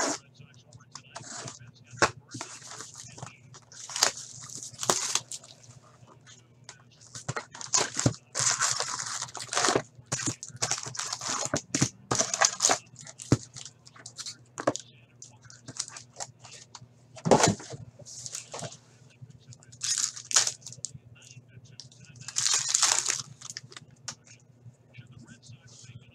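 Cardboard hockey card box being torn open and its packs pulled out, then a card pack's wrapper ripped open. Irregular bursts of tearing, crinkling and rustling, with sharp clicks.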